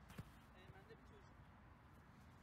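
Near silence, broken just after the start by a single short thud as a diving goalkeeper lands on artificial turf with the ball.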